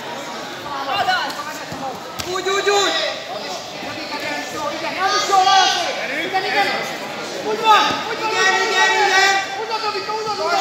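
Voices calling out across a sports hall, with one sharp knock about two seconds in.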